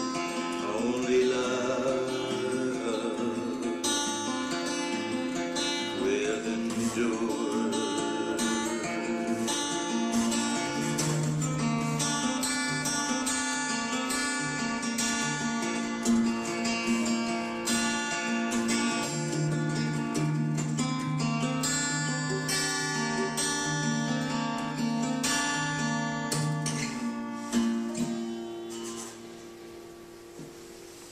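Steel-string acoustic guitar played solo, an instrumental passage of ringing chords over a pulsing bass note. Near the end the playing stops and the last notes fade.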